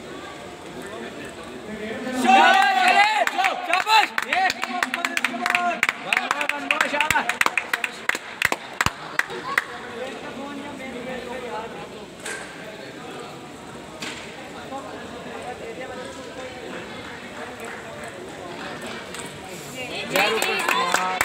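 Voices in a table tennis hall: a loud burst of voices about two seconds in, followed by several seconds of talk with many sharp clicks mixed in, then a quieter, steady background murmur.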